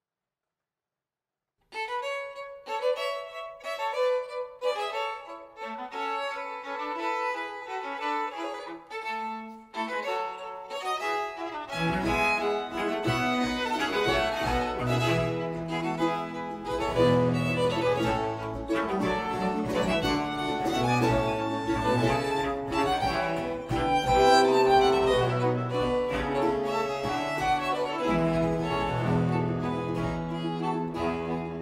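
String ensemble playing a Baroque orchestral prelude. Violins come in alone about two seconds in with a falling melodic line, and the lower strings and bass join around twelve seconds in.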